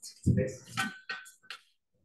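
A Thermomix stainless-steel mixing bowl clanking as it is tipped and shaken to free tart dough, with three quick knocks in the second half.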